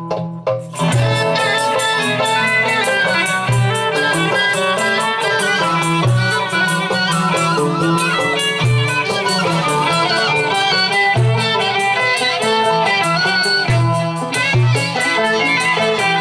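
Live instrumental passage played on oud and flute, the oud plucking a melody with recurring low notes under it.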